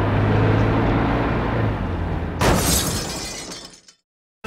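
Car crash sound effect: a low steady hum of driving, then about two and a half seconds in a sudden loud impact with shattering glass that dies away over a second or so.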